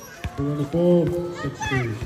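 A man's voice calling out loudly, with words too unclear to make out, from about half a second in until near the end.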